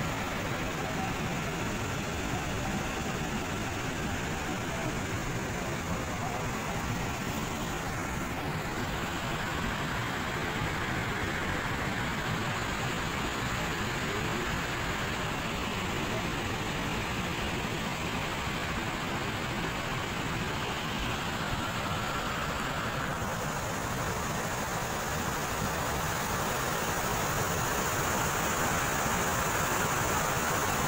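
Cold lahar, a muddy flow of volcanic sand, ash and stones from Merapi, rushing down a river channel with a steady noise that grows a little louder near the end.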